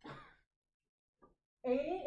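A short breathy sigh at the very start, then quiet until a woman's voice starts speaking near the end.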